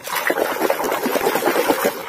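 Water splashing and sloshing as a hand swishes a muddy toy dump truck back and forth under the surface to wash the mud off, a steady busy churning without pauses.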